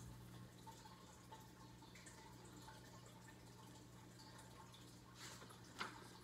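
Near silence: room tone with a faint steady low hum. Near the end comes a brief paper rustle, a page of a picture book being turned.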